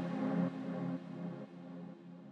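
The closing notes of a lo-fi house track fading out. A low repeating note and faint ambient layers die away step by step toward silence.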